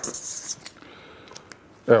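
Marker scratching across paper for about half a second, followed by a few faint clicks.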